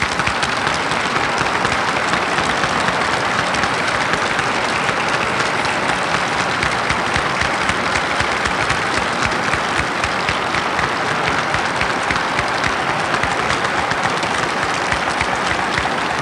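An audience applauding: dense, sustained clapping at an even level, the ovation at the end of a lecture.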